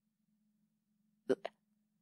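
A woman's voice saying one short word, "Look," about a second and a half in, after near silence.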